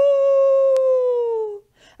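A woman's voice imitating a wolf's howl: one long 'oooo' that rises at the start, holds, then slowly sinks in pitch and stops about one and a half seconds in.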